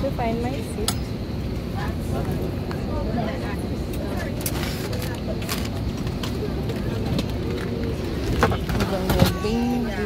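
Airliner cabin during boarding: a steady rush of air from the cabin air-conditioning, with passengers talking around. Scattered clicks and knocks, the loudest a little before the end.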